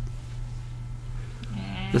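A pause in a man's speech, filled by a steady low electrical hum and faint hiss. Near the end a man's voice starts up again with a drawn-out sound.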